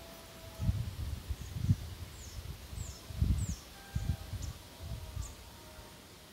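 Irregular low rumbling bursts of wind buffeting the microphone, with a small bird giving several short, high, downward-sliding chirps in the middle.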